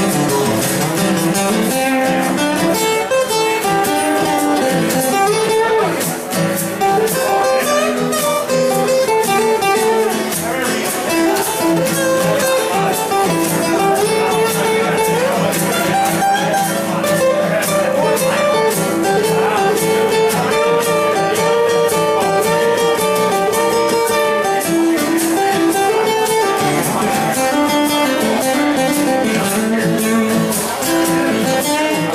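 Two acoustic guitars strummed and picked together in a live performance, played steadily with a wavering melody line above the chords.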